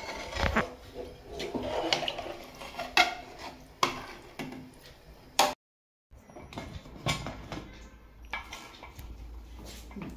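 A metal ladle clinking and scraping against the inside of a metal pressure cooker as a watery masala is stirred. After a sudden short silence, more scattered metal clatter follows as the cooker's lid is handled.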